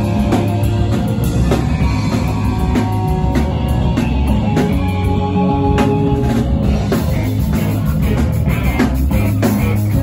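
Live punk rock band playing loudly: distorted electric guitars, electric bass and a drum kit pounding along at a steady beat, with held guitar notes ringing over the rhythm.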